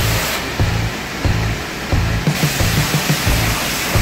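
High-pressure wash lance spraying water onto a car's bodywork: a steady loud hiss. Music with a steady low beat plays along with it.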